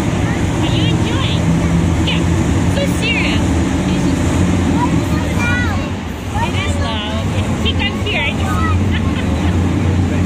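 Monster truck engines running steadily and loudly in an arena, with high-pitched voices from the crowd calling out over them.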